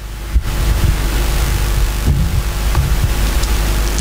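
Steady rushing hiss with a low hum underneath, growing gradually louder, with no voice in it.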